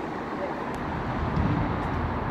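Steady low rumble of road traffic, with faint distant voices of players.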